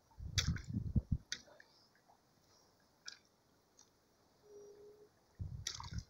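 Faint splashes and drips at the water's surface around a fishing float: one cluster about half a second to a second in, another near the end, with a few single drips between, over low rumbling bumps.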